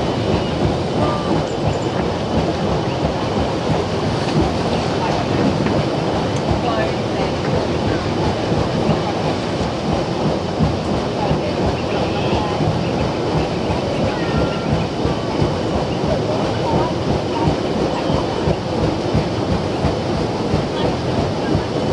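A paddle steamer's engine and paddle wheels running steadily underway, heard from on board: a continuous loud churning with a fast rhythmic clatter.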